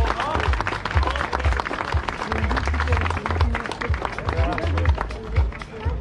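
A crowd applauding, many quick claps, with music and voices mixed in; the sound cuts off abruptly at the end.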